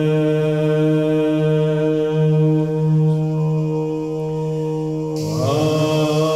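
Chanted vocal music: a low voice holds one long steady note for about five seconds, then the pitch starts to move again near the end.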